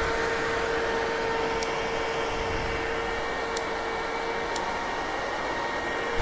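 Electric radiator cooling fan of a 2020 Husqvarna 701 Supermoto, a larger OEM fan, running steadily at full speed just after being switched on: an even whir of moving air with a constant motor whine.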